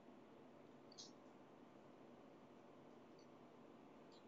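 Near silence: faint room hiss, with two brief, faint high-pitched squeaks, one about a second in and a softer one about three seconds in.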